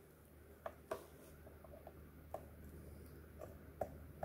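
Faint small clicks and taps, about five or six spread unevenly, from a hand handling and refitting a programming adapter clip on a BMW FEM module's circuit board, over a low steady hum.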